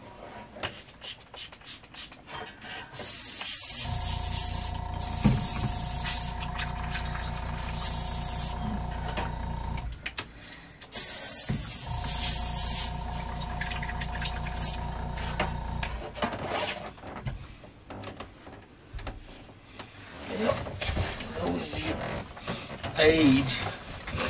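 Airbrush air compressor running in two stretches of several seconds each, with hisses of air spraying through the airbrush over it; clicks and handling of tools on the bench between and after.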